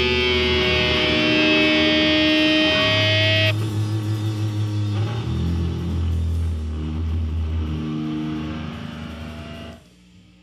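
Doom/sludge metal song ending: a loud held chord on distorted electric guitar cuts off about three and a half seconds in. Lower guitar notes keep ringing and wavering, fade, and then stop abruptly near the end.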